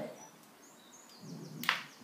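A golf club striking a golf ball once, a sharp crack near the end. A few faint bird chirps come before it.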